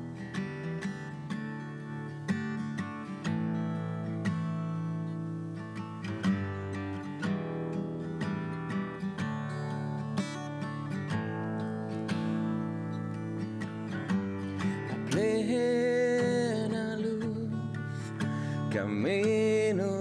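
Steel-string acoustic guitar playing a song's introduction alone, its notes and chords ringing. A man's singing voice comes in about three-quarters of the way through.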